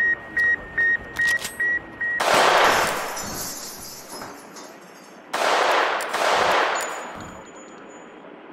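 Sputnik 1's radio signal: a steady, high single-pitched beep repeating about two and a half times a second, which stops about two seconds in. After it come two loud rushes of noise, each fading out over a second or two.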